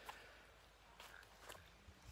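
Near silence: faint background hiss with a couple of soft clicks.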